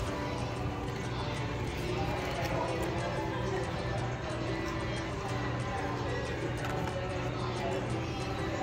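Background music playing steadily from a restaurant's wall-mounted sound system, with a voice in it.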